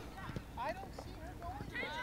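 Faint ambience between spoken phrases: distant voices calling, with a few light knocks.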